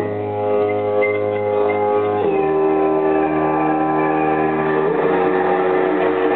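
Live band music: sustained, droning chords with no singing, the held notes stepping down about two seconds in and back up near the end.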